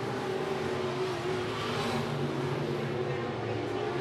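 IMCA Sport Modified race cars running laps on a dirt oval: a steady engine drone whose pitch wavers slightly as the field circles the track.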